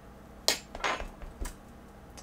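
A thin metal sculpting tool set down on a hard tabletop: a sharp clink about half a second in, then two lighter clinks as it settles.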